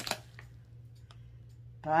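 A few short crinkling clicks of packing wrap being pulled off a stone at the start, then a couple of faint ticks over a quiet, steady low hum.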